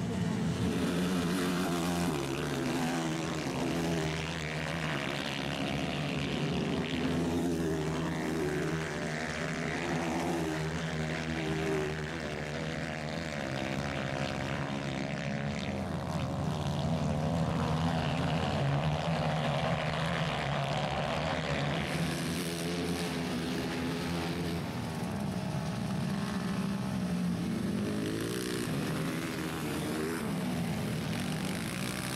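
230cc four-stroke dirt bike engines revving on a dirt track. The pitch keeps rising and falling as the riders open and close the throttle.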